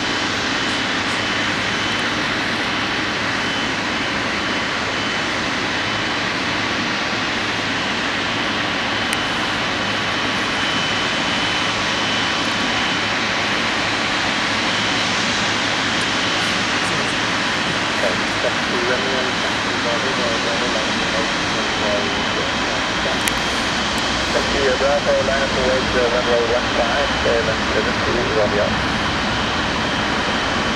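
Boeing 777 freighter's GE90 jet engines running at taxi idle as the aircraft rolls slowly in: a steady roar with a thin, constant high whine.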